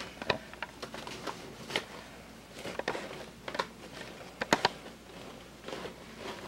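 Crumpled newspaper packing rustling and crackling as it is handled in a shipping box. Irregular crinkles and clicks, the sharpest pair about four and a half seconds in.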